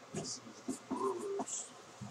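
A few quiet, indistinct words, with short hissy sounds like 's' sounds between them.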